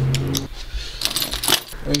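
Light metallic clinking and jingling, a series of sharp little ticks, after a short steady low hum in the first half second.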